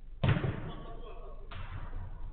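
Two sharp thuds of a football being struck during a five-a-side match: a loud one just after the start and a weaker one about a second and a half later, each dying away briefly.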